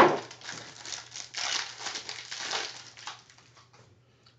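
A foil wrapper of an Absolute football card pack crinkling as it is opened and the cards are slid out and handled: a sharp crackle at the start, then softer rustling in short bursts that die away near the end.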